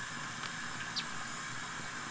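Tap water running steadily into an outdoor sink as a boar leg is rinsed under it, a continuous hiss, with two faint ticks.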